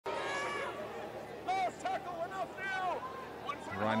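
A run of short, high-pitched shouted calls, several in quick succession, over background ground noise; a man's commentary voice comes in near the end.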